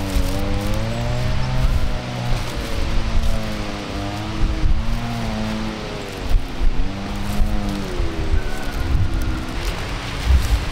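An engine running with its pitch rising and falling again and again, several swells of a second or two each, over a low rumble.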